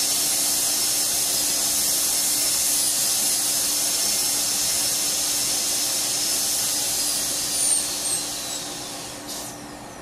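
Dental handpiece with a #2 round bur running with a steady high whine as it cuts an access cavity into a plastic typodont incisor. It winds down over the last couple of seconds as the bur is lifted off the tooth.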